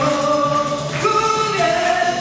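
Several men singing together into microphones over instrumental backing, holding long notes that change pitch about once a second.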